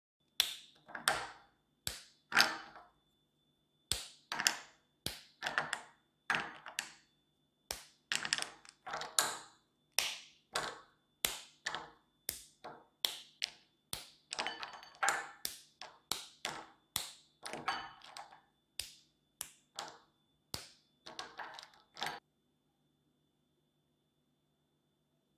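Squares of dark chocolate being snapped off a bar by hand over a bowl: a couple of dozen sharp, crisp snaps, about one or two a second, stopping about two seconds before the end.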